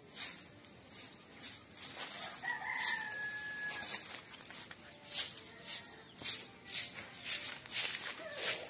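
A rooster crows once, starting about two and a half seconds in and held for about a second and a half. Short, hissy rustles repeat two or three times a second throughout.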